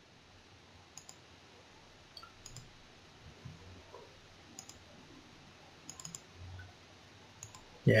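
Quiet computer mouse clicks, about half a dozen spread out, including a quick double-click, over faint room hiss.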